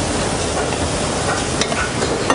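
Lamb mince hitting hot olive oil and sizzling with pancetta and vegetables in a copper sauté pan as it is spooned in, a steady frying hiss with a few faint clicks near the end.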